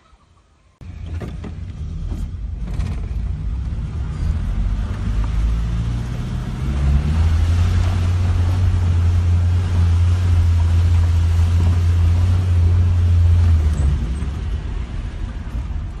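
A 1987 Suzuki Samurai's four-cylinder engine and drivetrain heard from inside the cabin as it is driven slowly, cutting in suddenly about a second in. A steady low drone builds around the middle and eases off near the end.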